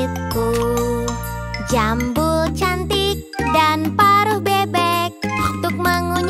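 Children's song: a sung vocal over bright backing music with steady bass notes that change every second or two.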